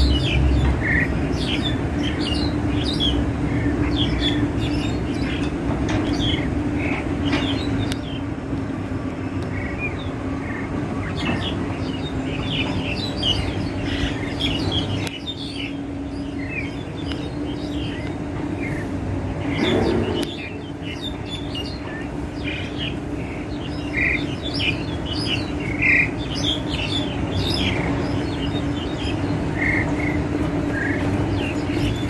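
Wild starling (jalak Hongkong) calling from a tree: a continual run of short chirps and whistles, over a steady low hum.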